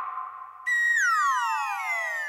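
Synthesized comedy sound effect: a held electronic tone, then about two-thirds of a second in a louder synth note that slides steadily down in pitch for over a second.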